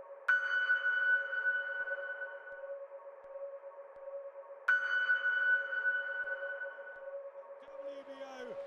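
Ambient electronic trailer music: a steady low drone under two sudden ringing pings, one just after the start and one about four and a half seconds later, each fading away over a couple of seconds.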